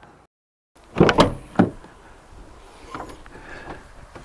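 Rear swing gate of a 2010 Jeep Liberty being handled: two sharp clunks about half a second apart roughly a second in, then quieter handling noise with a small knock near the end.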